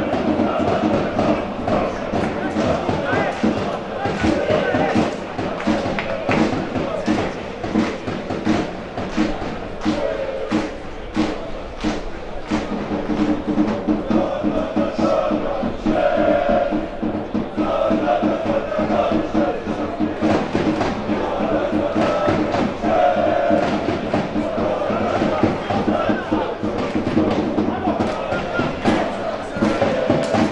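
Football supporters in the stands chanting and singing together, with a steady beat of thumps under the chant.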